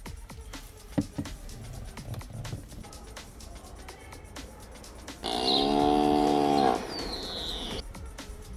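A cow mooing once, a single long steady call of about a second and a half starting about five seconds in, over faint background music. A short high falling whistle-like tone follows it.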